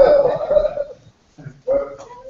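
A dog's drawn-out cry lasting about a second, then a shorter one near the end.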